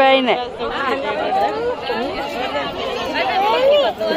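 A group of women chattering, several voices talking over one another at once.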